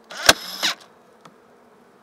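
Portable staple gun fired once into a wooden hive frame: a sharp crack inside a brief burst of about half a second, followed later by a small tick, over the faint hum of honey bees.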